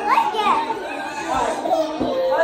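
Young children's voices as they talk and play in a room.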